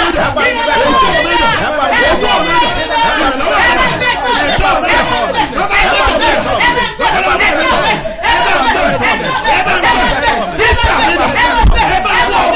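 A congregation praying aloud together: many voices at once, loud and continuous, in a large reverberant hall.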